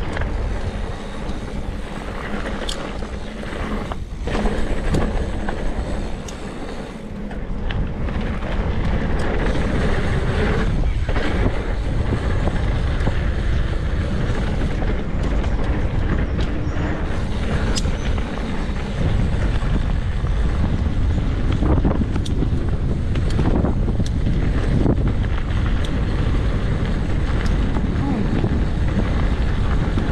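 Mountain bike ridden down a dirt singletrack: wind buffeting the camera microphone over the rumble of knobby tyres on dirt, with scattered clicks and rattles from the bike. It gets louder from about eight seconds in.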